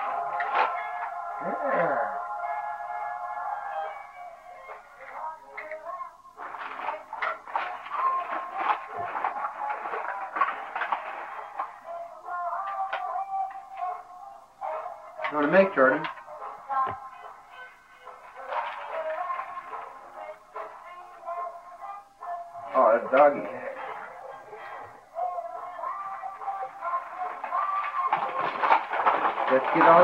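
Music with a voice, thin and with little bass, from a small loudspeaker: a short melody of held notes at the start, then voice and music running on with pauses.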